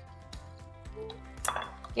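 Soft background music with a few light clinks of a utensil and container against a mixing bowl as cooked cauliflower is tipped in and stirring begins.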